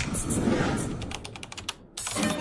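A rapid, irregular run of sharp clicks over a low background, cutting off just before the end.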